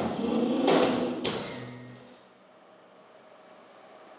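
Live rock band with horns hitting a loud accent with drum and cymbal strikes about a second in, then letting it ring out and fade by about two seconds in, leaving a quiet pause.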